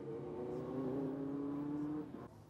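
A pack of open-wheel single-seater racing cars, Dallara F308 Formula 3 and Formula Abarth cars, running at high revs under acceleration, the engine note rising slightly in pitch.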